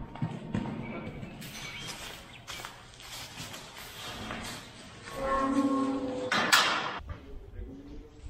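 Calf's hooves knocking on concrete and bedding and steel pipe livestock gates rattling as a calf is moved into a pen. A short held pitched sound comes about five seconds in, then a loud harsh clang or rattle of the gate.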